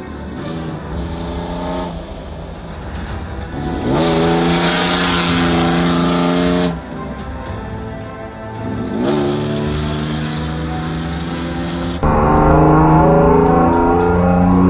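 Rally pickup truck engine revving hard as it accelerates on a dirt stage. Its pitch climbs and then holds, twice, with background music mixed in.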